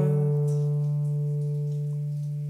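A chord on an acoustic guitar left ringing and slowly fading, with no new strum.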